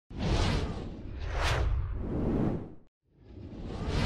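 Whoosh sound effects from a TV news bulletin's animated opening title. Several swelling rushes of noise, the sharpest peaking about a second and a half in, break off into brief silence near three seconds, and a last whoosh rises toward the end.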